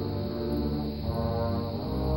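Youth orchestra playing slow, held chords, heaviest in the low register.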